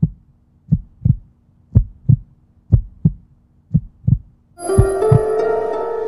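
A heartbeat sound effect: paired lub-dub thumps about once a second. About four and a half seconds in, music with sustained bright tones comes in over the beat.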